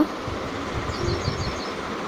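Steady low rumbling background noise, with a few faint high chirps about halfway through.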